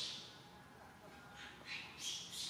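Faint outdoor ambience: a high hiss that fades early on and swells back up near the end.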